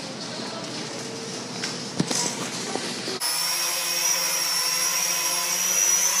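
Background noise of a store with a single knock about two seconds in; then, after an abrupt cut just past three seconds, a small toy quadcopter drone hovering, its motors and propellers making a steady high-pitched whine.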